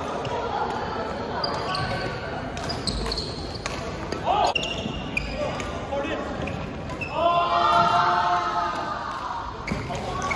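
Athletic shoes squeaking in short high chirps, and footsteps and light knocks on an indoor badminton court floor. Players' voices echo in the large hall.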